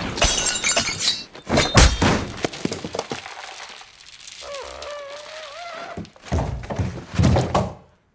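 Fight-scene sound effects: a rapid run of heavy thuds with breaking, shattering glass in the first two seconds, a brief wavering tone in a quieter middle stretch, then two more loud hits near the end before the sound cuts off suddenly.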